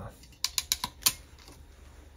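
Hand ferrule crimping tool clicking sharply about five times in quick succession as its jaws are released and opened off a freshly crimped wire ferrule.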